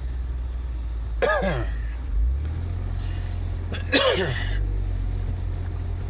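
A man coughs twice, briefly, about a second in and again near four seconds, the second louder. Under the coughs is the steady low drone of the Jeep Wrangler's engine running, heard from inside the cab.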